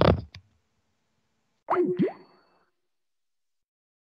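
A headset microphone is handled as it comes off, giving a loud crackling thump. About two seconds in comes a short sound that swoops down and back up in pitch, then the audio drops to dead silence.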